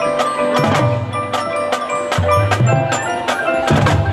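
High school marching band playing its field show: held brass and wind notes over struck mallet percussion and drums from the front ensemble.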